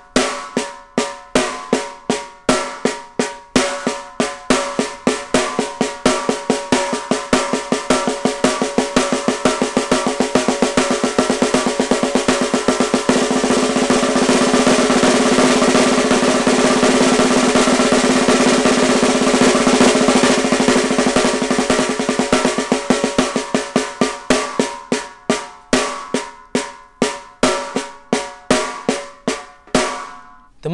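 Snare drum played with sticks in a single stroke roll using the Moeller technique. The strokes start at a few a second, speed up into a continuous fast roll in the middle, then slow back down to separate strokes near the end.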